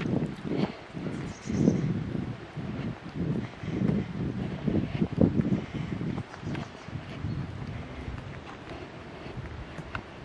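Footsteps on a tarmac road and wind buffeting the microphone while walking uphill, a low thud or gust about twice a second at first, settling into a steadier low rumble in the second half.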